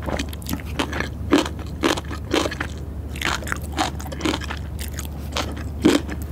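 Close-miked chewing of a mouthful of food: wet mouth smacks and clicks at an irregular pace of about two a second, the loudest near the end. A steady low hum runs underneath.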